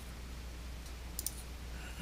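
Faint clicks of a computer mouse, a quick pair of ticks about a second in, over a low steady hum.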